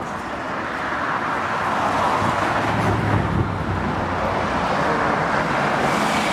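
Street traffic noise: a steady wash of passing cars that grows louder over the first two seconds, with a deeper rumble of a vehicle going by around the middle.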